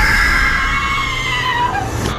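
A person screaming, one long loud scream whose pitch slowly falls, over a deep low drone from the trailer's sound design.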